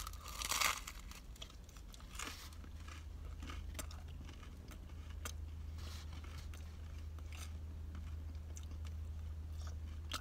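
A bite into the crusty back edge of a pizza slice, a crunch in the first second, then faint chewing with small crackles. A steady low hum runs underneath.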